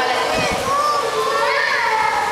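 Many overlapping voices, children's among them, chattering and calling out at once in a steady hubbub.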